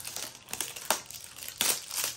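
Tightly wrapped product packaging being crinkled and torn open by hand: irregular crackling, with a sharp snap just short of a second in and a louder rustle near the end.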